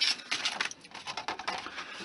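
Soft rustling and a few light taps of thin plastic sheets being handled: a scribed styrene sheet and its clear plastic wrapper slid about and laid down on a cutting mat.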